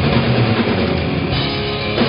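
A live rock band playing through stage amplification: electric guitars and a drum kit.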